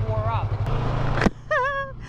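Yamaha MT-03's parallel-twin engine running under talk: a low, rapidly pulsing idle, then a steadier, slightly higher note after an abrupt break a little past halfway as the bike is under way.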